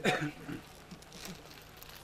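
A man's voice finishing a word at the start, then faint crinkling and rustling.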